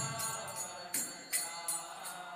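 Small metal hand cymbals (kartals) struck in a steady rhythm, about two ringing clashes a second, keeping time for a devotional kirtan between sung lines, with a faint sustained note underneath.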